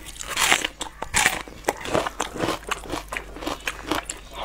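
Crisp crunching bites and chewing of a raw red onion: a quick string of sharp crunches, the loudest about half a second and just over a second in.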